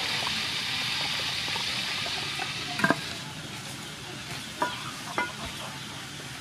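Pieces of pork frying in hot oil in a pot, with a steady sizzle that fades about three seconds in. A sharp double knock comes just before the fade, and two single knocks follow near the end.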